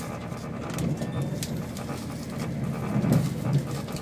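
Passenger train running, its steady low rumble heard from inside the carriage, swelling louder about a second in and again around the three-second mark.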